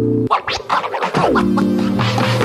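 Background electronic music with DJ-style scratch effects and a falling pitch sweep a little over a second in.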